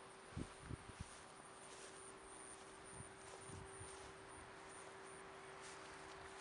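Near silence with soft footsteps on grass: a few low thuds in the first second and a couple more about three seconds in, over a faint steady hum.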